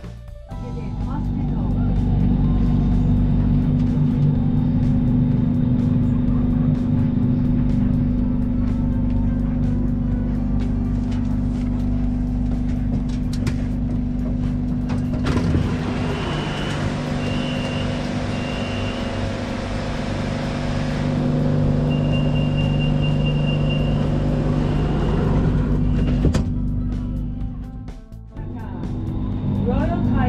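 BTS Skytrain electric train on the Sukhumvit Line, running with a steady hum. About halfway through, three short high beeps and then a longer steady high tone sound as the doors are about to close.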